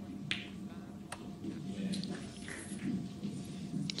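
Sharp clicks of snooker balls as a shot is played: the cue striking the cue ball about a quarter second in, then the cue ball hitting the black about a second in, with a few fainter clicks after.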